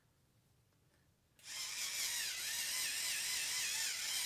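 Battery-powered 5-in-1 facial cleansing brush switched on about a second and a half in, its small motor running the spinning sponge head with a steady high whine whose pitch wavers, as the head is held against the cheek.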